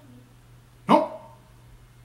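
One short, loud call with a sharp start about a second in, fading within a fraction of a second.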